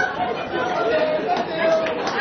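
Several people talking at once: indistinct chatter of a seated party audience.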